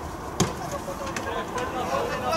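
A football kicked hard once, about half a second in, with faint voices calling across the pitch.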